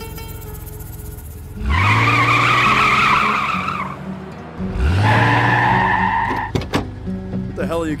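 Car tyres squealing twice in a cartoon sound effect, each squeal about two seconds long with the engine revving up under it, over background music.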